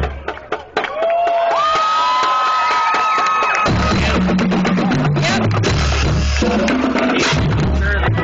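High school marching band playing, with drums and held, sliding high notes in the first half. About halfway through, a low bass line from the sousaphones comes back in underneath.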